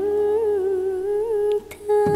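A woman's voice holding one long sung note, with a gentle waver in pitch and no accompaniment, in a Nghệ Tĩnh folk song; it breaks off about a second and a half in.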